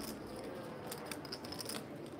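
Poker chips clicking as players handle their stacks: a run of faint, irregular light clicks over a low room murmur.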